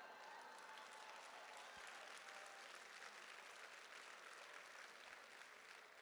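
Audience applauding, faint and steady.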